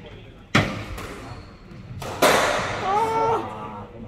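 Two loud smacks of a squash ball struck hard and hitting the court walls, each ringing on in the hall's echo.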